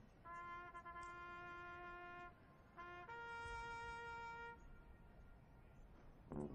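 A single brass horn, faint, plays a held note of about two seconds, repeats it briefly, then holds a higher note for about a second and a half.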